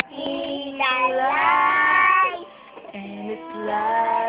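Young children singing, with one long held note about a second in, a short break, then the singing picks up again.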